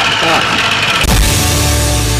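Farm machinery engines, a combine harvester and tractor, running with a steady high whine. About a second in, theme music cuts in suddenly with a deep bass and held tones.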